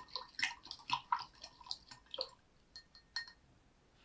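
A plastic spoon stirring sugar into water in a drinking glass: a quick, irregular run of light clinks against the glass with a little swish of water, dying away a little after three seconds in.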